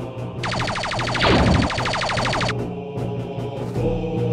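Rapid-fire blaster sound effect from a minigun-style rotary blaster: a fast, even stream of shots lasting about two seconds, with a sweep falling steeply in pitch partway through. Background music plays underneath.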